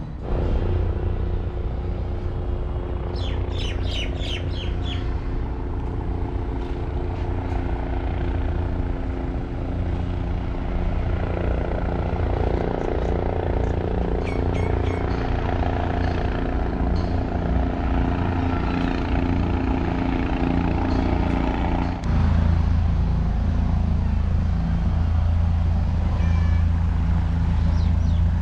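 Bell 407 helicopter approaching to land: a steady drone from its turbine and rotor, with small birds chirping a few times over it. About two-thirds of the way through, the sound shifts suddenly to a louder, deeper rumble.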